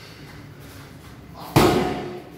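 A punch from a boxing glove landing on a focus mitt: one sharp smack about one and a half seconds in, tailing off briefly in the room.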